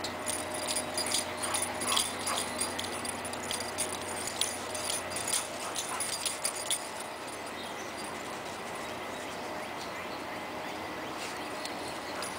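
Two dogs playing, with short yips and whimpers coming thick and fast through the first six or seven seconds, then dying away.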